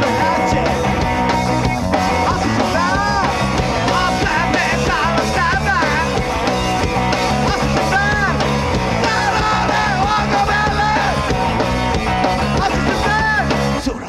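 Live punk rock band playing: loud electric guitars, bass and drums with a singer, the song stopping abruptly right at the end.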